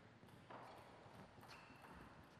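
Near silence between table tennis rallies, broken by two light knocks about a second apart.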